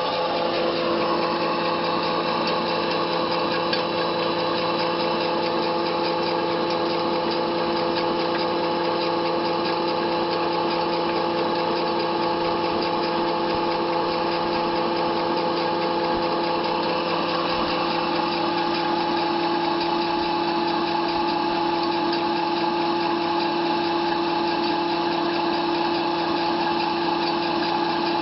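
Small electric fish-feed pellet extruder running under load, pressing feed mash into pellets. It gives a steady mechanical hum of several held tones over a constant noise.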